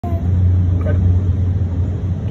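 Passenger train running, a steady low rumble heard inside the carriage.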